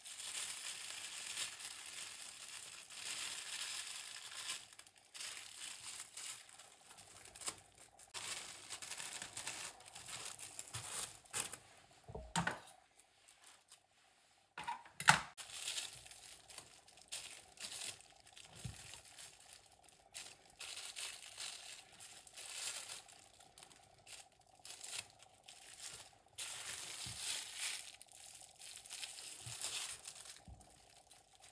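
Intermittent crinkling and rustling of sheet material being handled, in stretches with pauses, with two sharp knocks about twelve and fifteen seconds in.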